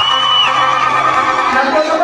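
Audience cheering and shouting, with many voices overlapping in a steady, loud mass.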